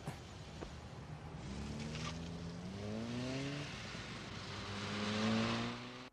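Sports car engine accelerating hard. Its note holds, climbs in pitch, breaks off around the middle as for a gear change, then climbs again, louder near the end, before cutting off suddenly.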